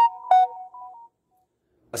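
A short electronic melody of clean beeping notes at a few different pitches, like a phone ringtone or notification. It stops about a second in and gives way to dead silence.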